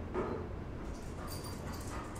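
A dog whimpering: a short whine just after the start, with more faint dog sounds in the second half.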